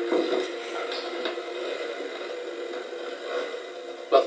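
Soft background music from a TV broadcast, fading away in the first seconds under a steady hiss, with a few light ticks.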